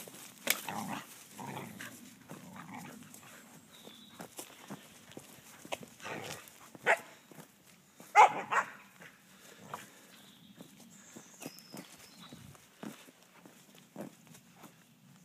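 A dog barking a few short times, the loudest bark a little past the middle, amid the rustle of dry fallen leaves as it scrabbles through them.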